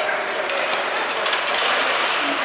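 Ice rink noise from a youth hockey game: skates scraping and sticks clattering on the ice, with a couple of sharp clicks.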